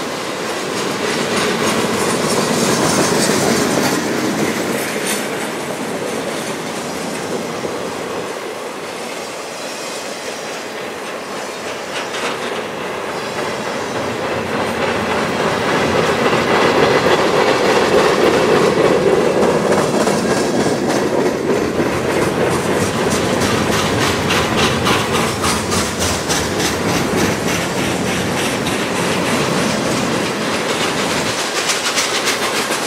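Freight cars of a mixed freight train rolling past: a steady rumble of steel wheels on rail with a fast clickety-clack of the wheels, swelling in the middle and easing again toward the end.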